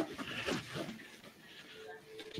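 A faint, muffled voice in about the first second, fading away.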